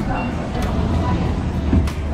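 Restaurant background voices over a low rumble that sets in about a second in, with a single sharp click near the end.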